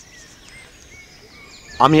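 A few short, faint bird chirps over quiet forest ambience. A man's voice starts near the end.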